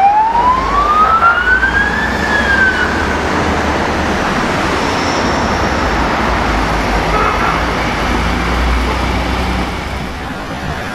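A police siren gives one rising wail that climbs over about two seconds and then falls away, followed by steady traffic noise of cars passing with a low engine rumble.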